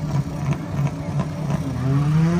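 A car engine idling with a lumpy, pulsing beat, about four pulses a second; then, about one and a half seconds in, an engine revs up and its pitch climbs steadily.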